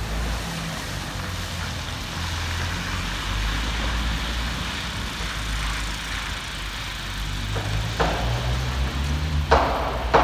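Street traffic noise: car tyres hissing on a wet, slushy road over a low rumble. A few sharp knocks near the end.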